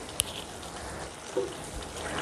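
Cauliflower and mutton curry cooking in a steel pan on the stove, a steady soft sizzling hiss as its gravy reduces. A single sharp click comes just after the start.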